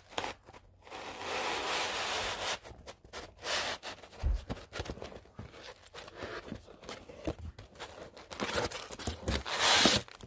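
Cardboard bobblehead box and its packaging being handled and opened: scraping, rubbing and tearing, with scattered clicks, a dull thump about four seconds in, and a louder rustle near the end.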